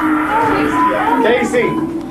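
People's voices, drawn out and wavering, over a steady held tone.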